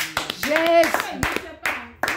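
Hand clapping: a run of sharp, irregular claps alongside a voice calling out.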